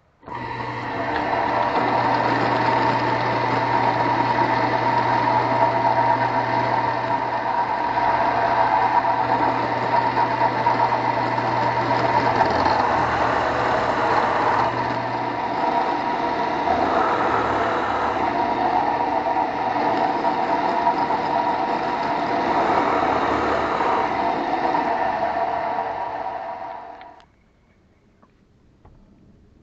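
Drill press running steadily while a 16 mm bit bores shallow 8 mm-deep holes into a scrap wood block. The sound swells briefly a few times and cuts off abruptly near the end.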